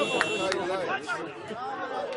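Many voices of players and spectators talking and calling over one another at a football ground, with a few sharp claps in the first half second.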